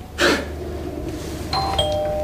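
Two-note doorbell chime: a higher note about one and a half seconds in, then a lower note that rings on. A short burst of noise comes just before it, near the start.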